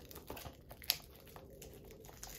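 Plastic wrapping on a Blu-ray case crinkling and crackling as it is peeled off by hand, in quick irregular crackles, with one sharp snap about a second in.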